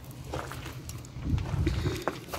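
Footsteps on gravel, with low thuds and rumble in the second half as the hand-held camera is moved.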